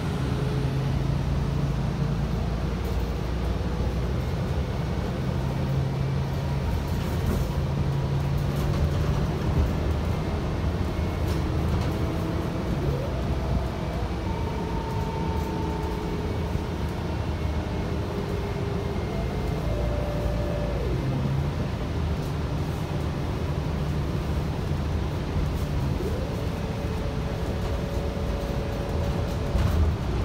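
Cabin sound of a 2022 Gillig Low Floor Plus CNG 40-foot transit bus under way: a steady engine and road rumble. Over it, a whine rises in pitch a few times as the bus speeds up and falls as it slows.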